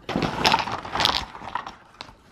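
A plastic bubble mailer being torn open and its contents, boxed glass nail polish bottles, tipped out: a burst of crinkling and rattling that fades away over the second half.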